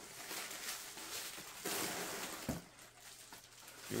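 Plastic bubble wrap and cardboard packaging rustling and crinkling as a hand digs into a shipping box and lifts out a small boxed item, with a soft knock about two and a half seconds in.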